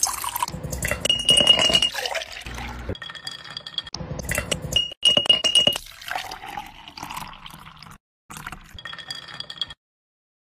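Clinking of glass, with brief ringing tones, in several short segments broken by abrupt cuts.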